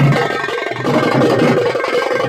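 Nashik dhol ensemble drumming: large steel-shelled dhols beaten together with a smaller drum played with thin sticks, in a loud, dense, continuous rhythm.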